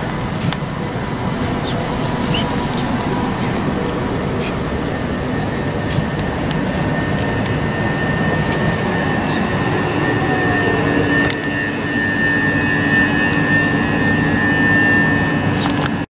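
Multiple-unit passenger train running past the platform: a steady rumble of wheels on rail, growing a little louder, with a thin high steady tone that gets stronger from about eleven seconds in.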